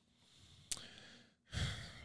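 A man's breath close on a microphone about one and a half seconds in, after a small click; otherwise near silence.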